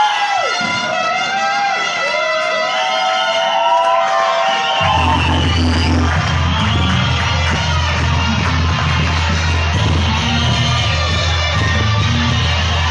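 Loud music for a chinelo dance, with gliding whoops from the crowd over it in the first few seconds; a heavy bass line comes in suddenly about five seconds in.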